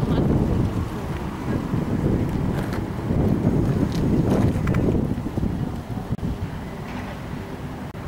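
Wind buffeting the camera microphone: a heavy, uneven low rumble, easing off after about six seconds.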